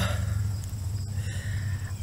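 A pause between speech filled by a steady low hum, with faint insects chirring on a high steady note.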